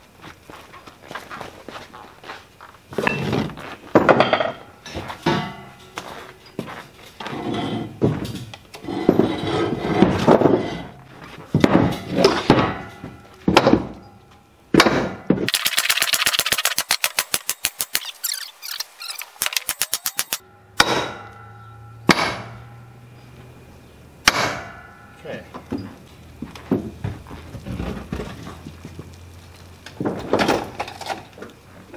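Steel pipe rollers and pry bars clanking and thunking against the wooden trailer deck and a heavy drill press's steel base as the machine is levered and rolled along. In the middle comes a rapid run of clicks, about five or six a second, for several seconds.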